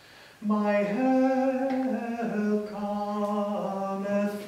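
A man singing a slow, sustained melody with long held notes, the phrase starting about half a second in after a short breath, accompanied by acoustic guitar.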